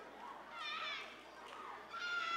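High-pitched voices calling out, once about half a second in and again at the very end, over low background room noise.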